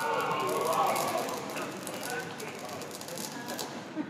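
Faint, indistinct talking in a large hall, quieter than the amplified speech around it, over a steady hiss.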